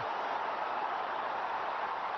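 Steady noise of a large stadium crowd at a cricket match as a top-edged skyer hangs in the air.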